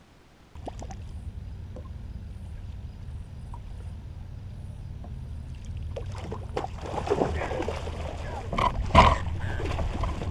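A steady low rumble runs under the scene, then a few seconds from the end water splashes hard, the loudest moment, as a muskie strikes a lure at the side of the boat.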